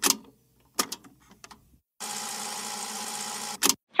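Retro VHS camcorder sound effect: a few sharp mechanical clicks, then steady tape static hiss from about two seconds in, cut off by a final click near the end.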